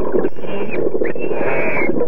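Underwater sound with the manatee footage: a dense, rough noise with a few higher drawn-out tones over it.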